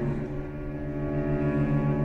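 A solo cello, bowed, moves to a lower note at the start and holds it as one long tone with a slow vibrato.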